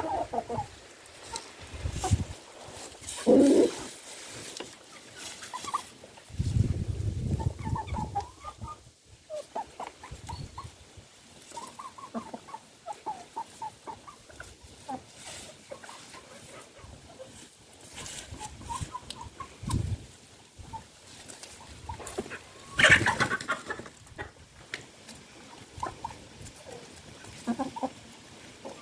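Domestic chickens clucking as they feed, a steady scatter of short calls from the flock. A louder, sharper call stands out twice, once early and once near the end.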